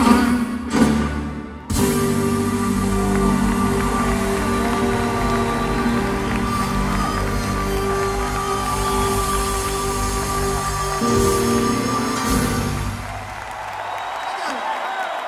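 Live rock band playing the closing instrumental bars of a song, with long held chords, ending about thirteen seconds in; the audience applauds as it ends.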